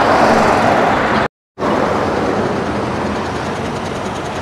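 Steady noise of highway traffic going past, with a brief gap of total silence a little over a second in.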